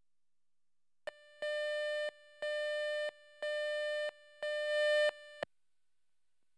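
Electronic countdown beep tone from a TV tape slate, sounding four times about once a second, each beep under a second long. A short blip comes just before the first beep and another just after the last, and between beeps the tone drops to a faint hum.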